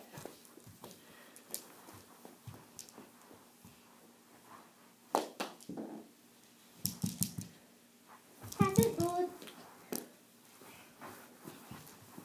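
A few sharp clacks of plastic mini hockey sticks against a small ball during a knee hockey game, spread out with quiet between them, and a short voice about two-thirds of the way in.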